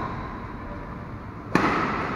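A badminton racket hits the shuttlecock once, a sharp crack about one and a half seconds in that rings briefly in the hall.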